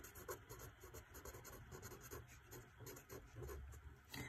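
Marker pen writing on paper: a run of faint, short strokes as a couple of words are written out.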